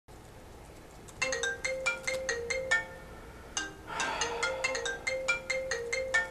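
Mobile phone ringtone: a melody of quick, bell-like struck notes, repeating in short phrases, starting about a second in.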